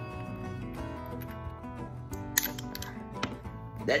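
Winchester Silvertip .44 Magnum cartridges being loaded into the open cylinder of a Smith & Wesson Model 29 revolver: a few light, sharp metallic clicks, heard over background guitar music.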